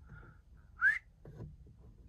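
A short, rising whistle about a second in, most likely the man whistling briefly through his lips.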